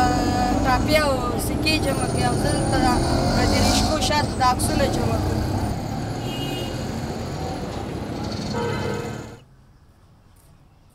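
Busy street traffic noise with motor vehicles running. A boy's voice talks over it for about the first half. The noise cuts off suddenly near the end.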